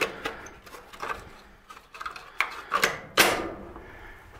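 A few scattered knocks and clicks, the loudest about three seconds in, with a short ring after it.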